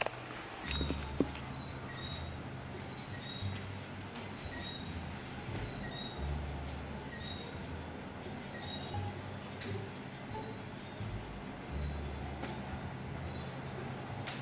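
Quiet indoor ambience: a steady faint high whine, an uneven low rumble, and faint short chirps coming irregularly about once a second. One sharp click comes about two-thirds of the way through.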